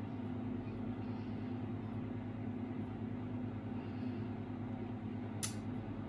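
A steady low hum, with a single sharp click about five and a half seconds in.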